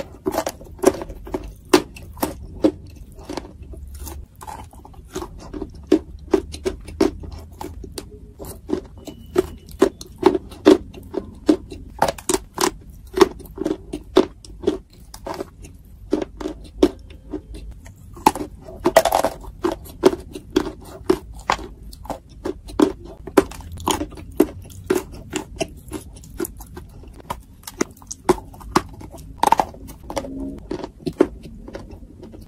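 Close-miked bites and chewing of a slab of dry edible clay spread with wet clay paste: crisp crunches come about two to three a second, with a louder burst of crunching a little past the middle.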